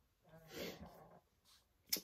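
A woman makes a brief, soft, breathy throat sound about half a second in, much quieter than her speech, followed by a faint mouth click just before she speaks again.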